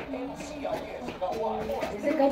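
Indistinct voices talking, not clearly made out, over a steady low room rumble.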